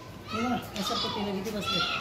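High-pitched voices talking, with several people speaking.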